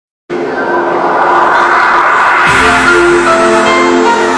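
Audience noise and cheering in a large hall, then music starts about halfway through with a low thump and steady held notes.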